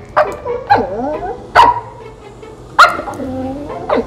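Siberian husky 'talking': about four short vocal calls that slide up and down in pitch, barks and yips mixed with a drawn-out woo near the end.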